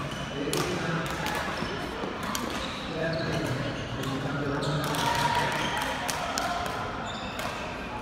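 Badminton racquets striking a shuttlecock during a doubles rally: sharp hits at irregular intervals of roughly half a second to a second, over background chatter.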